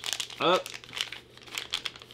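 A thin white wrapper crinkling and crackling in the hands as it is pulled open around a small mystery figurine, in many short, irregular crackles.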